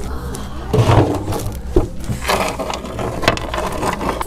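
Scattered knocks and clatter of small objects against a wooden bench as a child handles things in it, over a low steady rumble.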